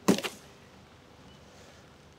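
A brief scrape and rustle of cardboard packing being pulled out of a bike box, then only faint background.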